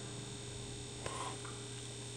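Quiet, steady low electrical hum with faint background hiss, and a single faint click about halfway through.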